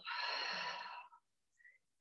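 A long, audible exhaled breath lasting about a second: a paced out-breath in a yoga flow.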